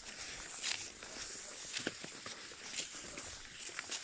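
Cross-country skis sliding over snow, with ski or pole strokes landing about once a second.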